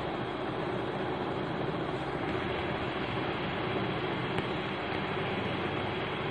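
Steady background noise, over which a metal spoon stirs dry flour in a glass bowl.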